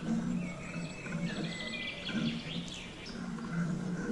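Eurasian tree sparrows chirping, a cluster of quick high chirps and short glides in the middle, over a low, uneven background sound.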